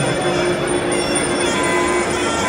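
Ringside sarama music for Muay Thai, led by the pi java (Thai oboe) holding one long, steady reedy note.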